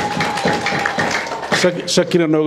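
Audience applauding: a dense patter of many hands clapping, with a steady thin tone running under it. A man's voice cuts back in near the end.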